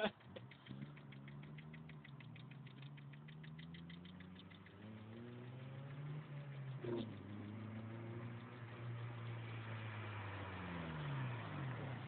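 A faint car engine running at a held pitch that creeps slowly upward, then drops away near the end.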